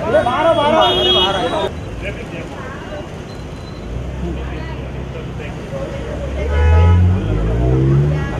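Loud voices calling out over street traffic noise, followed by a low vehicle engine rumble that swells and rises in pitch in the second half.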